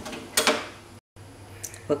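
Portable gas stove being switched off: one short hissing click about a third of a second in as the burner knob is turned and the flame goes out.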